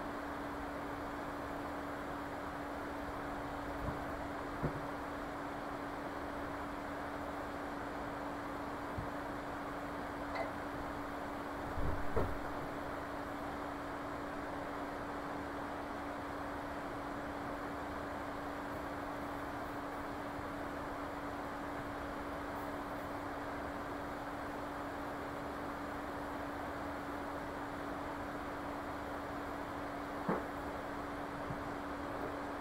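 Steady background hiss with a constant low hum, broken by a few soft knocks, the loudest about twelve seconds in.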